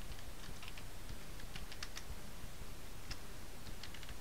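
Computer keyboard being typed on: irregular light key clicks, several a second, over a steady low background hum.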